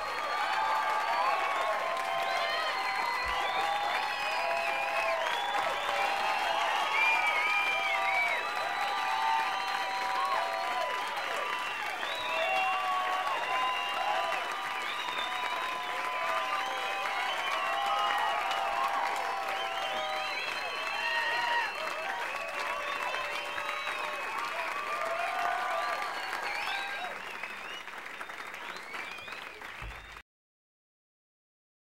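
Audience applauding and cheering, with many voices calling out, just after the band ends the song; the applause fades out near the end.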